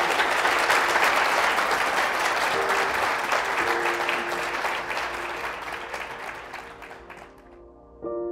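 Audience applause, slowly fading and dropping out near the end, with soft music of steady held notes beneath it.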